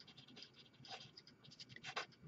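Marker writing on paper: a run of faint, quick scratchy strokes as letters are written.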